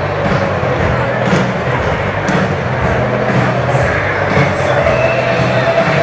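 Loud amplified music from a stadium concert sound system, mixed with the noise of a large crowd.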